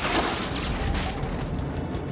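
A film explosion sound effect: a sudden blast right at the start, followed by a continuing low rumble of fire and debris.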